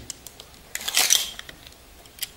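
A retractable steel tape measure being pulled out: a short rasp of about half a second a little under a second in, with a few small handling clicks around it.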